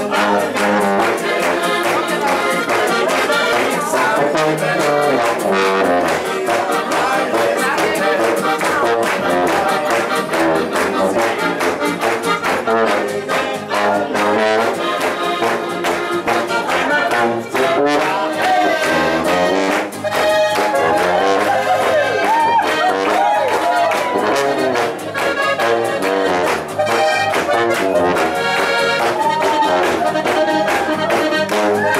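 Live band playing a birthday polka, with brass to the fore over a steady beat.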